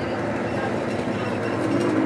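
Steady road and engine noise inside a moving bus, an even rumble and hiss with no distinct events.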